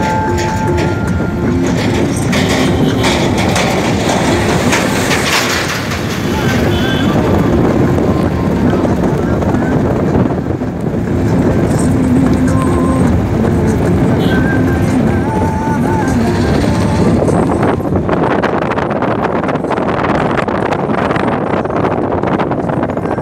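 Steady road and engine noise heard from inside a moving taxi, with snatches of music or voices mixed in under it.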